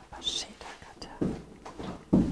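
Soft whispered speech: a few quiet, breathy words.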